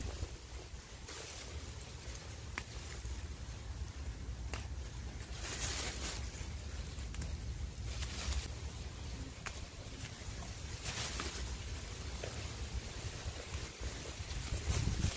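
Wind rumbling on the microphone, with intermittent rustles and brushes of leafy pepper plants being pushed through and picked, and a few small snaps.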